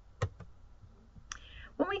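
Two quick sharp clicks close together near the start, typical of a computer mouse button pressed to change a slide, then a woman's voice begins speaking near the end.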